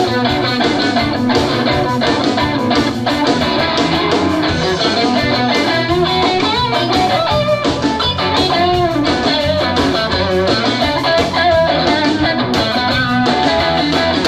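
Live electric blues trio playing an instrumental passage: an electric guitar lead with bending notes over bass guitar and drums.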